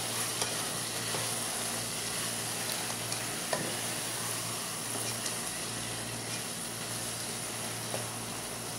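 Potato masala sizzling in a nonstick pot while it is stirred with a silicone spatula over the gas flame. A few light scrapes and taps of the spatula against the pot are heard, one clearer about halfway through.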